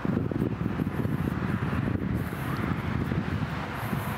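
Wind buffeting an outdoor microphone, an irregular low rumble.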